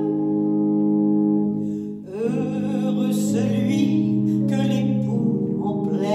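Offertory hymn: a singer with sustained keyboard accompaniment. A held chord fades about two seconds in, then the singing resumes with a new phrase over the accompaniment.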